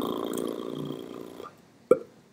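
A person's low, drawn-out creaky vocal sound, fading away over about a second and a half, then a short blip near the end.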